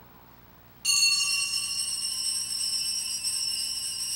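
Altar bells rung at the consecration, marking the elevation of the host: a sudden burst of bright jingling bell ringing about a second in, which keeps on ringing.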